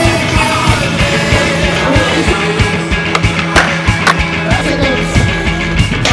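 Skateboard wheels rolling on concrete under background music with a steady drum beat, with two sharp board clacks about three and a half and four seconds in.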